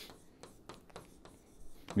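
Faint, irregular scratching and tapping of handwriting strokes, in a small room.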